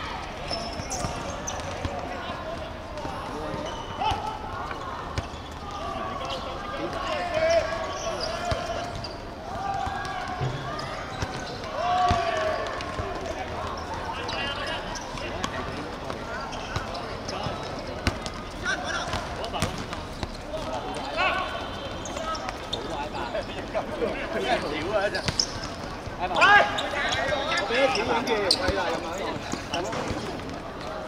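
Players shouting and calling to one another during an amateur football match, with the ball being kicked and bouncing on a hard outdoor court; the loudest burst of shouting and impacts comes a few seconds before the end.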